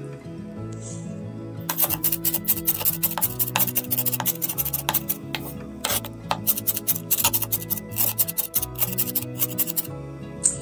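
Chef's knife mincing a pile of fresh flat-leaf parsley on a wooden cutting board, a rapid run of sharp chops, several a second, starting about two seconds in.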